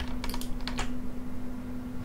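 A quick run of about five sharp clicks from a computer keyboard and mouse in the first second, a Command-click on a Mac, over a steady low hum.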